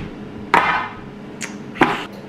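Clear plastic produce-keeper container knocking against a glass tabletop: two sharp knocks, one about half a second in with a short rattle after it and one near the end.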